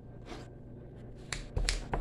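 Quiet room tone, then a quick run of sharp clicks and taps a little past halfway, with dull thuds among them.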